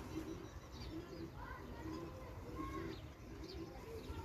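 Pigeons cooing, a run of repeated low coos, with a few higher bird chirps over them.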